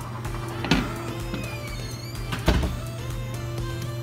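Background music with a steady low drone and held notes. Two sharp knocks cut through it, one under a second in and one past the middle.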